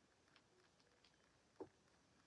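Near silence: room tone, with a few faint ticks and one brief soft click about one and a half seconds in.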